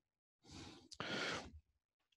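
A man's breath into a close headset microphone: a soft, breathy sigh lasting about a second, starting about half a second in.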